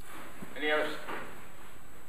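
A brief spoken sound from a person's voice off the microphone, about half a second long and starting about half a second in, over steady room noise.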